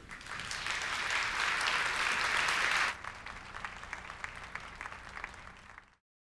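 Audience applause at the close of a talk, full and dense for about three seconds, then dropping suddenly to fainter, scattered clapping that cuts off near the end.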